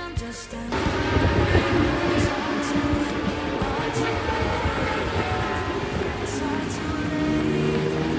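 Background music, over which a sport motorcycle's engine starts running about a second in and keeps going with a loud, rough rumble.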